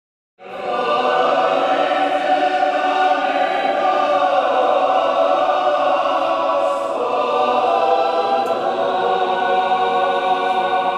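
A choir singing long, held chords as intro music, starting about half a second in.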